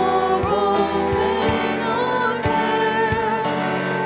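A worship team of several voices singing a slow hymn-style worship song together, with instrumental accompaniment and a steady beat.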